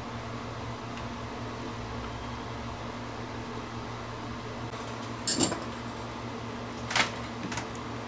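Steady electrical hum with two sharp clinks about five and seven seconds in, the first with a brief metallic ring, from tools handled on a workbench.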